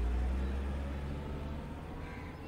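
A low, steady rumble with faint held tones above it, from the show's soundtrack, slowly softening.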